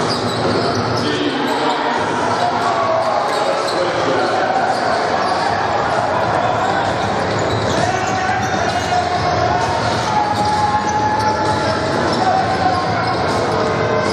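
Live basketball game in a reverberant gym: a ball dribbling on the hardwood court over a steady murmur of crowd voices and calls.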